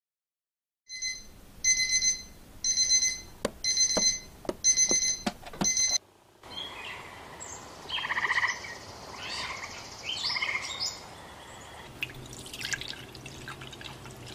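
Electronic alarm clock beeping, a run of about six short high beeps, roughly one a second, that stops suddenly after about five seconds. Softer chirping follows, and a low steady hum starts near the end.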